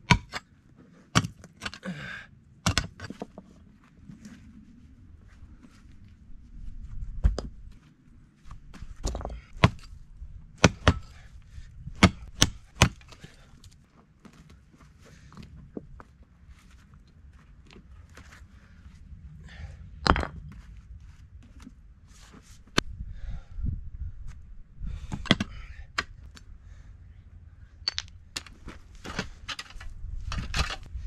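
Pick mattock striking into rocky soil: a string of sharp, irregular chops and knocks, some in quick pairs, with short pauses between.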